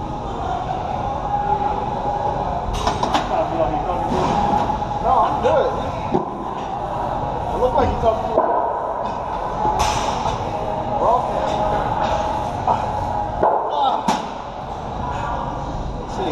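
Busy gym: background voices, with a few sharp thuds and clanks of weight equipment.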